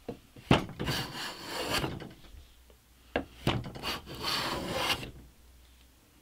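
Metal bench plane with a notched blade cutting along a softwood board: three rough strokes of about a second each, the first two each begun by a sharp knock.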